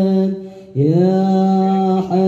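Boys' voices chanting an Islamic sholawat in unison through microphones and a PA, on long held notes. The chant dips briefly about half a second in, then resumes on a new sustained note.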